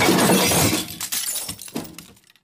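Crash sound effect of glass shattering and breaking, loud at first and dying away over about a second and a half, with a few scattered clinks near the end.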